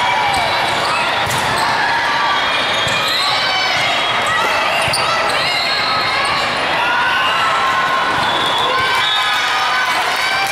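Steady loud din of a large hall with many volleyball games at once: overlapping voices and shouts of players, with scattered smacks of a volleyball being served and played.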